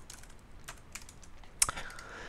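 Computer keyboard typing: a handful of separate key clicks, the loudest about a second and a half in.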